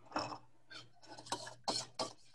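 A kitchen utensil scraping and knocking against a mixing bowl in about five short, irregular strokes while the cake's wet ingredients are mixed, over a faint steady electrical hum.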